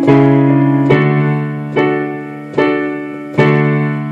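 Digital keyboard with a piano sound, block chords struck five times at an even pace of a little under one a second, each chord ringing and fading before the next. The chords walk through the bridge of a pop song's chord progression.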